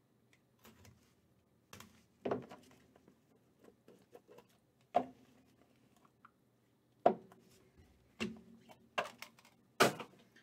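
Hands opening a cardboard trading-card box and handling the cards inside, making a string of about seven irregular sharp taps and knocks.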